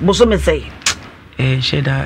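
Talk-show speech, with a low rumble under the first half-second and a single sharp click just before a second in.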